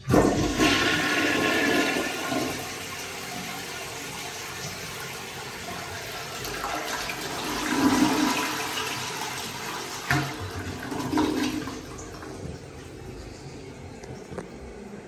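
Vintage 1936 Crane Mauretania toilet flushing: the tank lever is pressed and water rushes suddenly and loudly into the bowl, easing after about two seconds into a steadier swirl that swells twice more in the middle and dies down near the end.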